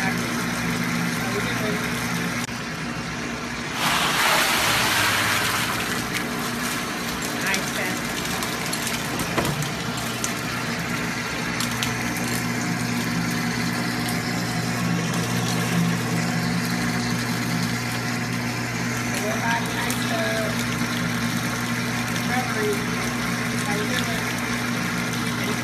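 Whirlpool cold tub's water pump running with a steady hum, its jets churning the iced water. A louder rush of water comes about four seconds in and lasts about two seconds.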